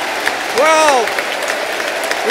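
Football crowd applauding a goal, dense clapping throughout. About half a second in, a voice calls out one drawn-out note that rises and falls.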